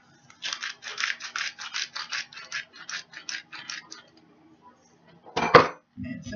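A salt shaker shaken over the casserole mixture: about twenty quick, even shakes over three and a half seconds. A single sharp knock follows near the end, the loudest sound.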